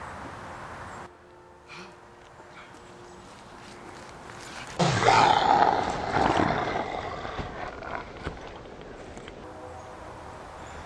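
A loud roar sound effect starting suddenly about five seconds in, with a falling growl at its onset, then fading away over the next few seconds.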